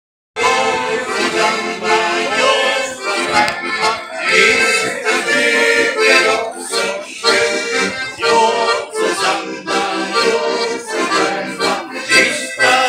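An accordion playing a tune with a melody over rhythmic chords, beginning about half a second in.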